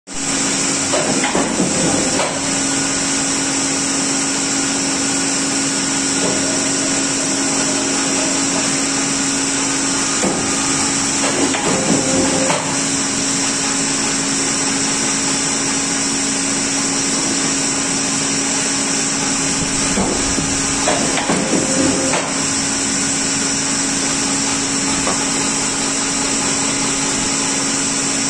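Perfecta guillotine paper cutter running with a steady motor hum, with three bursts of clatter about ten seconds apart as the clamp and blade come down on stacks of booklets.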